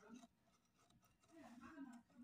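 Near silence with faint scratching and handling of a cardboard biscuit box as scissors are set against its edge.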